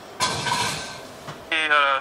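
A white ceramic baking dish being slid into an oven: a sudden scraping rattle that fades away over about a second.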